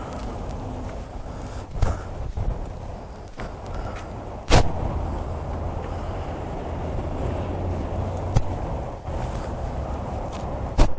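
A steady low background rumble with a few sharp knocks: one near two seconds in, the loudest about four and a half seconds in, and another near the end.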